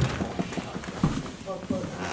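Footsteps and knocks close to the microphone as a person moves right up to it, with sharp strikes at the start, just after, and again about a second in.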